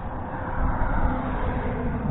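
Steady low rumbling background noise outdoors, with a faint steady hum.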